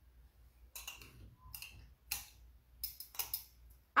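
Metal kitchen tongs clicking against a ceramic bowl while picking up mint sprigs: several light, irregular clicks.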